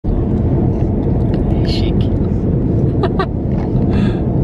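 Steady road and engine rumble inside the cabin of a moving car, with a brief voice sound about three seconds in.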